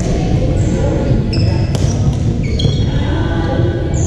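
A doubles racket-sport rally on a hardwood gym floor: a few sharp strikes of racket on ball or shuttle and several short, high shoe squeaks on the floor, over a steady hall din with background voices.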